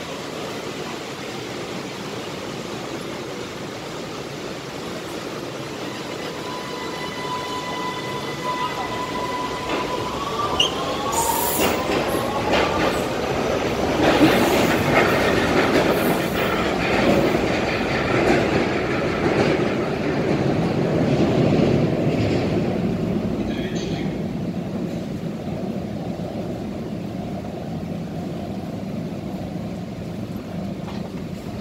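Vienna U-Bahn train pulling out of the platform: a steady electric tone, then a rising whine about ten seconds in as it accelerates, while the rumble of wheels on rails grows loud and then fades away.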